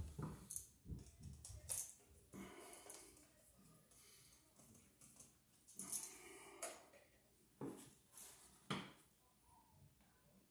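Faint, scattered clicks and short scrapes of hand tools and wire being handled at a wall outlet, with a few sharper clicks between about six and nine seconds in.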